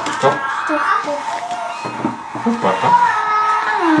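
Indistinct voices, with some held, music-like tones mixed in; no clear sound of the mixing itself.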